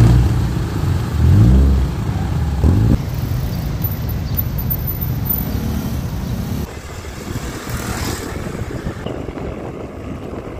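Street traffic with motorcycles and cars, one engine revving up between one and three seconds in. The sound changes abruptly about three seconds in to a steadier, quieter road noise.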